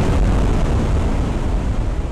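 A loud, steady rumble of noise, heavy in the low end like a jet or explosion sound effect, laid over a transition.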